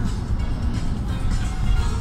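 Road and engine noise heard inside a car's cabin while driving close beside a semi-trailer truck, a steady low rumble, with music playing along with it.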